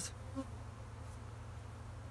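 Honeybees buzzing faintly around an open hive, over a steady low hum.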